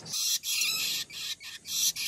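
Young shrike giving a run of harsh, rasping begging calls, about two a second, while being offered a grasshopper.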